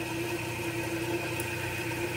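Rollimat pivot polishing machine running steadily, a hum with a thin high whine, as it polishes a clock pivot.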